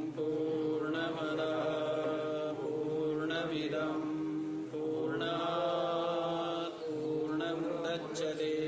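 A man chanting solo, holding long, level notes in phrases broken by short pauses.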